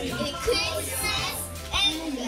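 Background music with a steady low bass line under young girls' voices, with two brief high-pitched calls, about half a second in and near the end.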